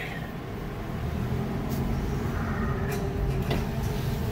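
Steady engine and road rumble of a car driving slowly, heard from inside the cabin. A few sharp knocks and rattles come as the car jars over bumps.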